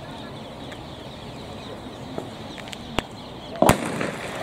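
Starting pistol fired once near the end, a sharp crack that starts the race, after a few seconds of steady outdoor background noise; a faint click comes about half a second before it.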